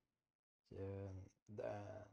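Only speech: a man's voice saying "so, uh" after a moment of dead silence, with no other sound.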